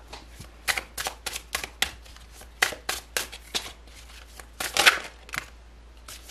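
A tarot deck being shuffled by hand: quick runs of cards slapping and flicking against each other, in several short spells with brief pauses between, the loudest near the end.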